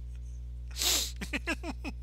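A person bursting out laughing: a sudden rush of breath a little under a second in, then a quick run of about seven short laughs, each falling in pitch.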